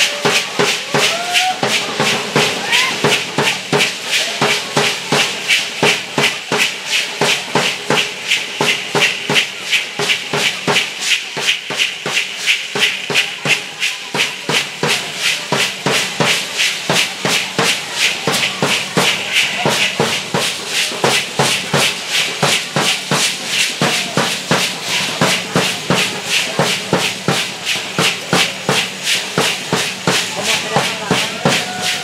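Matachines dance music: a drum beat and the dancers' hand rattles shaking together in a fast, steady rhythm, about three beats a second.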